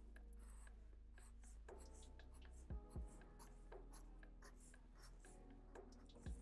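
Felt-tip marker tip scratching on paper in short, quick strokes while inking small details, faint over quiet background music. Two soft low thumps are heard about three seconds in.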